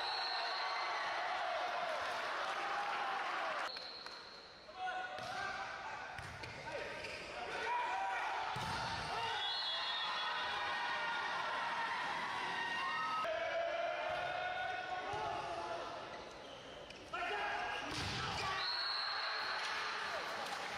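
Indoor volleyball rally sounds: ball strikes and thuds, players shouting and calling on court, and short high referee whistle blasts at the start and end of rallies.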